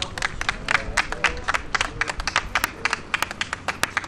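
A small group of people clapping, the separate hand claps distinct and irregular, several a second, with a voice or two calling out over the first half.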